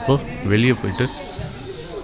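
Speech: a man talking in short phrases, with a pause in the second half.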